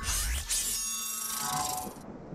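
Electronic logo sting: synthesized sound-design music with a rising sweep about half a second in and several held high tones over a noisy wash, dropping in level near the end.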